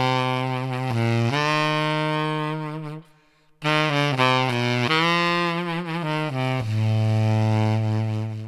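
Tenor saxophone played with a soft, velvety subtone in its low range: a phrase of held low notes, a short breath break about three seconds in, then more sustained notes, some with vibrato.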